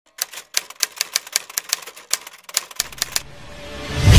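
Typewriter sound effect: a quick run of key clacks, about six a second, for nearly three seconds as text is typed out. A low rumble then swells up in the last second.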